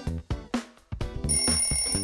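Upbeat background music that drops away briefly, then a ringing alarm-bell sound effect starting a little over a second in as the quiz countdown timer runs out.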